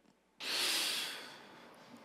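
A man's breath into a close podium microphone. It starts about half a second in and fades away over about a second.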